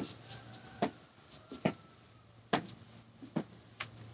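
Footsteps on gravel from marching in place, a handful of short separate crunches at uneven spacing. Faint high bird chirps sound over them.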